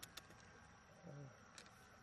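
Near silence: faint steady outdoor background with a few soft clicks as pearls are handled in the wet mussel flesh, and a short low voice-like sound about a second in.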